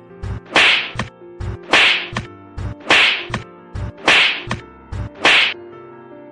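Whip-crack sound effects in a steady rhythm: five loud sharp cracks about a second apart, with softer clicks between, over a faint held tone. The cracks stop shortly before the end.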